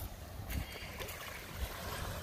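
Wind buffeting the microphone over small waves lapping at a sandy, shelly shoreline, with a couple of faint thumps.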